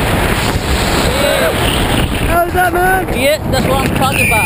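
Strong wind rushing over the camera microphone while descending under an open tandem parachute canopy. Short voiced calls break through in the second half.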